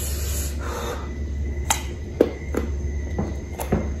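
Close-up mouth sounds of biting and chewing a slice of crisp green Indian mango: a soft rustle at first, then several short, sharp crunches and wet clicks. A steady low hum runs underneath.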